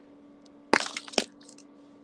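A plastic Gorilla glue stick being opened and handled: a sharp crackling snap about three-quarters of a second in, then a second, shorter snap half a second later.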